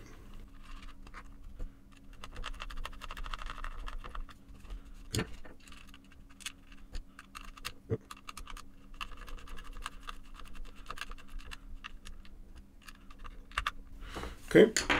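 Small screws being turned back into the metal mounting frame of an Ethernet wall jack with a hand screwdriver: faint scratching and ticking as the threads bite, with two sharper clicks about five and eight seconds in.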